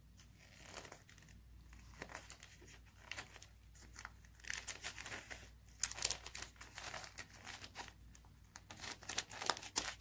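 Advertisement paper wrapped with tape crinkling and rustling as hands fold and smooth it around a small rock, in scattered handling strokes, busiest in the middle and near the end.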